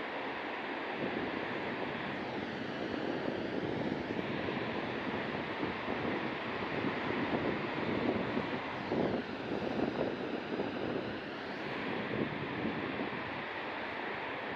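Steady rushing of heavy ocean surf mixed with wind buffeting the microphone, swelling louder with rough surges through the middle.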